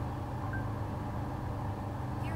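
Steady low hum and rumble of a car's interior background.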